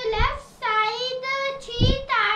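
A young girl's voice speaking in a sing-song, chant-like way, holding her notes long.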